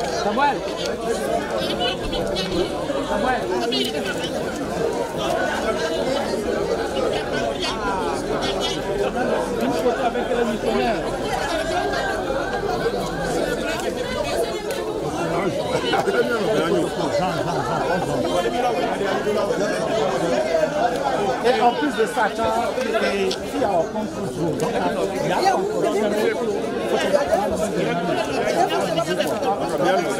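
Crowd chatter: many people talking at once in overlapping conversations, with no single voice standing out.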